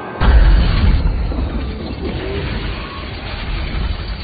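A film sound effect: a sudden deep boom about a quarter second in, followed by a loud rumble that slowly fades, mixed with orchestral film score, cutting off abruptly just after the end.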